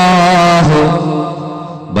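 A man's voice intoning Arabic in a slow, melodic chant, holding a wavering note for about half a second before letting the phrase fall away. An echoing room tail follows, and the next chanted phrase starts right at the end.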